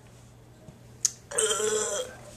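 A sharp click about a second in, then a man's loud, short, strained sound from the throat lasting under a second, his reaction to a gulp of drink.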